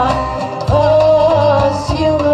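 A woman singing a Bulgarian folk song into a microphone over instrumental accompaniment with a steady bass pulse; she holds long, ornamented notes, a new one starting just under a second in.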